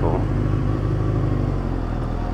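Motorcycle engine running steadily at low speed, a low, even drone, with a slight change in its beat near the end.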